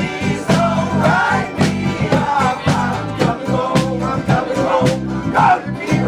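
Informal acoustic folk jam: strummed acoustic guitars in a steady rhythm with several voices singing together.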